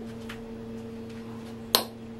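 A steady low hum, with one sharp click near the end.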